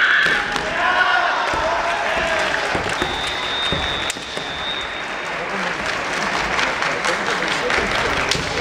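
Kendo fencers' kiai shouts and sharp clacks of bamboo shinai and stamping feet on the wooden floor during an exchange of strikes, over a steady crowd murmur. A high steady tone sounds for about two seconds in the middle.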